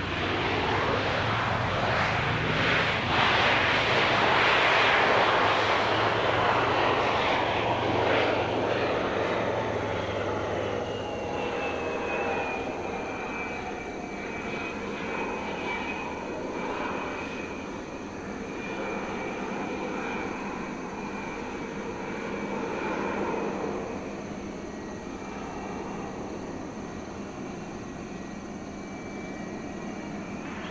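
Twin turbofans of an American Eagle Embraer regional jet slowing after landing. A loud jet roar swells over the first few seconds and fades. Then a whine falls in pitch as the engines spool down and settles into a steady idle whine while the jet rolls off the runway.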